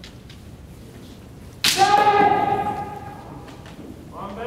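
Bamboo shinai clacking faintly, then about one and a half seconds in a sharp strike followed by a long drawn-out kiai shout from a kendo fighter that fades over a second and a half. This is the sound of a hiki-dō, a body cut struck while stepping back, scored as a point.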